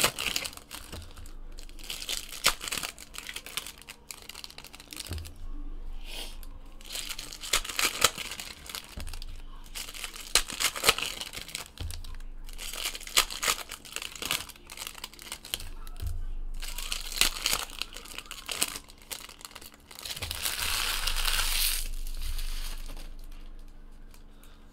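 Baseball card pack wrappers crinkling and tearing as the packs are ripped open by hand. The rustling comes in irregular spells, the longest a couple of seconds near the end.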